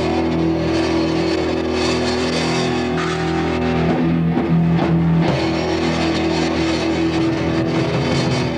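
Amateur metal band playing live in a small room: electric guitars hold long, loud, sustained chords over a bass.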